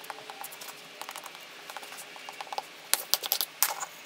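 Plastic glue spreader scraping and ticking across a glue-covered pine 2x4, with light, irregular clicks. About three seconds in come several sharp knocks as the spreader is laid on the bench and the boards are handled and knocked together.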